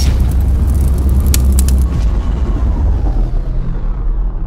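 Logo-intro sound effect: a loud, deep rumble with crackling clicks and hiss over it. The crackling and hiss die away about halfway through while the low rumble carries on.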